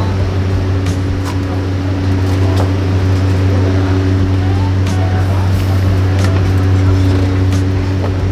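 Steady low hum of a restaurant kitchen's row of gas burners and extraction, with scattered clinks and knocks of clay pot lids and a ladle being handled.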